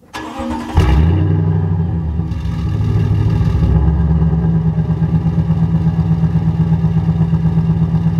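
A Toyota Tundra pickup's engine is cranked by the starter for under a second, catches suddenly and flares up. It then settles into a loud, steady idle with a regular throb, heard from behind the truck near the exhaust.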